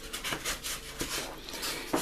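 Handling noise from a plywood motor mount and its wires being moved against a foam model-aircraft fuselage: a run of faint rubbing scrapes and small clicks.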